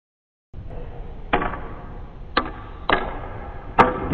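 Snooker cue and balls clicking: four sharp clicks, the first about a second in and the last near the end, over a low steady background rumble that starts half a second in.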